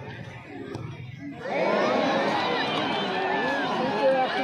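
A large crowd of football spectators murmuring, then breaking out suddenly into loud cheering and shouting about a second and a half in, reacting to a penalty kick in a shootout.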